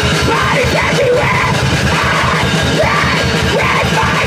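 Grindcore band rehearsal: a vocalist screams into a handheld microphone over fast, dense drumming and distorted guitar.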